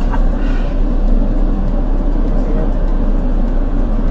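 Steady low hum of a car running, heard from inside its cabin.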